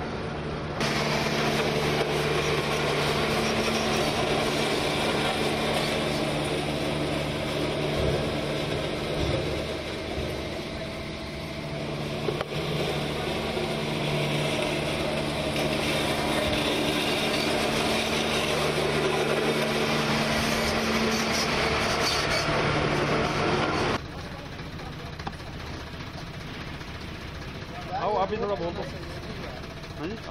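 Diesel engines of asphalt road-paving machines, a paver and a road roller, running steadily at close range with a constant low engine hum. The sound drops away suddenly about 24 seconds in and is quieter after that, with voices starting near the end.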